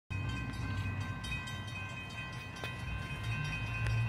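Distant diesel train horn held as a steady chord of several tones, over the low rumble of an approaching freight train that grows slightly louder toward the end.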